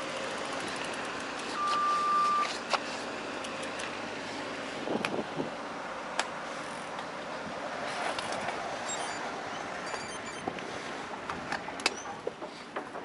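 A reversing alarm on clean-up machinery, one long steady beep about two seconds in, heard over the steady rushing noise of riding, with scattered light clicks and knocks.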